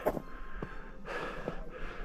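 A hiker breathing hard through a pause in his talk: a breath near the start and another about a second in, with a couple of faint clicks.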